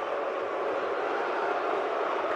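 Football stadium crowd noise: a steady, even din with no single voice standing out.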